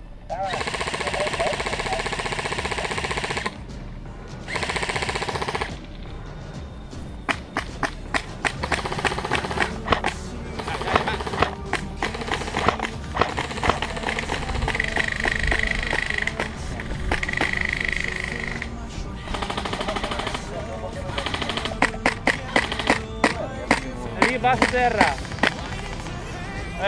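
Airsoft electric rifle firing on full auto: a long burst of about three seconds and a second burst of about a second, followed by many sharp, shorter clicks and cracks.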